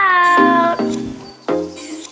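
A single cat meow, held for about three-quarters of a second and falling slightly in pitch, followed by background music.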